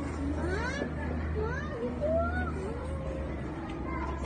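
A toddler's wordless vocalizing: several short high calls that rise and fall in pitch, over a steady low hum.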